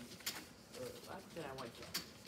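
Faint, low murmuring from a person's voice, two short hums or mumbles in the middle, with a brief sharp hiss or click near the start and another near the end.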